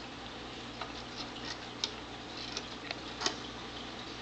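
Scattered light clicks and taps against glass from a cat playing inside a glass aquarium, about five in four seconds, the loudest a little past three seconds in, over a steady background hiss.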